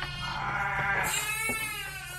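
A lamb bleating: two long, high calls, the first fading out about half a second in and the second starting about a second in, dropping slightly in pitch.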